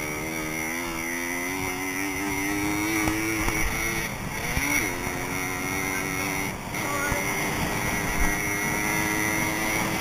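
Dirt bike engine pulling under throttle, its pitch climbing steadily, then dropping and picking up again at gear changes about four and a half and six and a half seconds in, over steady wind noise.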